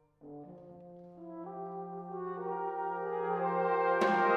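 Brass band playing held chords. After a brief pause, a soft low note comes in, more parts join about one to one and a half seconds in, and the chord swells steadily louder.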